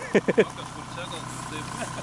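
A Jeep Grand Cherokee's engine idling steadily, a low even hum, with a short burst of a man's voice at the very start.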